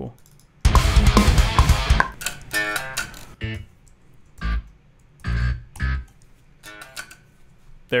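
Playback of a down-tuned metal riff from a recording session: about a second and a half of full-band guitars and programmed bass, then a run of stop-start fragments and short single programmed bass notes.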